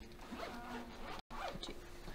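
Faint scratchy rustling in a quiet room, with the recording cutting out completely for a moment about a second and a quarter in.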